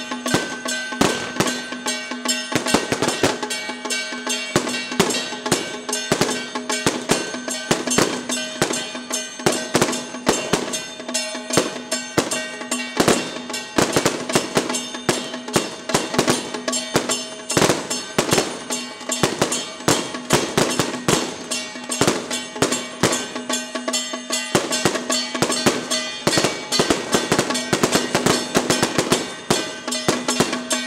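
Temple procession percussion: drums, gongs and cymbals struck in a dense, rapid rhythm over a steady ringing tone.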